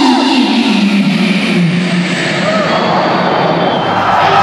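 Loud live rock-concert sound in an arena: a sustained note slides downward in pitch in steps over the crowd's noise.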